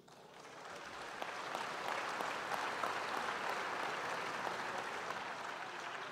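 Audience in a large hall applauding, the clapping building over the first couple of seconds, holding steady, then easing slightly near the end.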